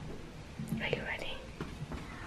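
A short whisper, about a second in, with quiet room sound around it.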